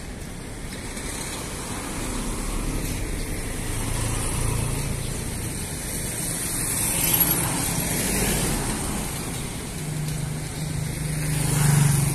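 Street traffic: motor vehicles passing close by, the noise swelling about seven seconds in and again near the end.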